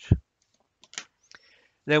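A few faint clicks from small scissors snipping a paper strip and being laid down on a tabletop, spread over about half a second near the middle.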